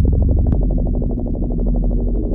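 Electronic music: a deep sustained synthesizer bass and a steady held tone under a fast, even stream of short clicking pulses, with one sharp hit about half a second in.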